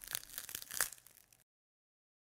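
Faint crackling tail of a title-animation sound effect: a few scattered clicks and crackles, then dead silence from about one and a half seconds in.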